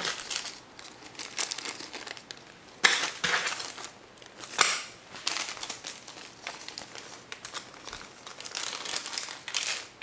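A small clear plastic bag of screws crinkling and rustling as it is handled and opened, in irregular bursts with a couple of sharp crackles about three and four and a half seconds in.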